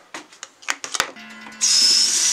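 A few quick clicks and knocks, then about one and a half seconds in a bathroom tap starts running water into the sink over a toothbrush: a loud, steady hiss.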